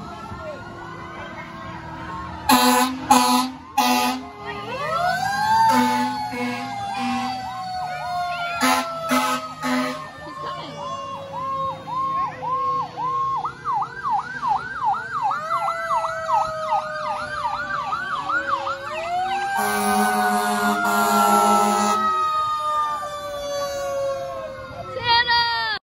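Fire truck sirens passing close by: overlapping wails that rise and slowly fall, switching to a rapid yelp in the middle. Loud horn blasts cut across them: several short ones in the first ten seconds and one long blast near the end.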